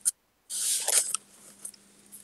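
A click, then about half a second later a short, hissy rustle of handling noise on a video-call participant's open microphone, over a faint steady hum.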